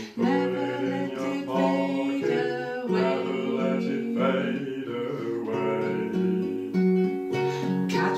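Music: a classical guitar played with a woman's voice singing along.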